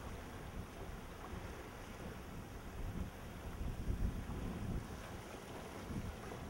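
Low, uneven rumble of wind buffeting the microphone, swelling and easing irregularly.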